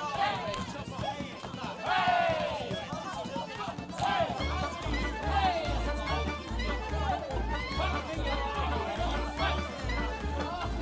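A group of voices shouting and whooping excitedly over music, without clear words. A low pulsing bass beat comes in about four and a half seconds in.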